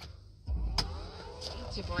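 A BMW 530e plug-in hybrid's cabin as the car powers up: a sharp click a little under a second in, with a low steady hum that starts about half a second in and carries on.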